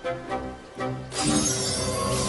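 Film score music, joined about a second in by a sudden swell of glittering, shimmering noise: a cartoon magic-casting sound effect that carries on to the end.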